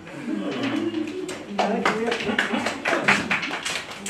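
A small group clapping by hand, separate sharp claps starting about a second and a half in, with voices talking over them.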